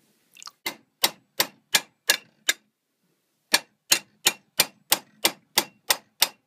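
Hammer blows on a metal plate held in a bench vise: sharp metallic strikes at about three a second, with a pause of about a second midway.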